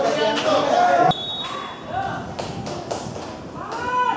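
Football players and onlookers shouting and calling out. A dense mix of voices cuts off abruptly about a second in, followed by scattered short shouts and several sharp taps of a football being kicked.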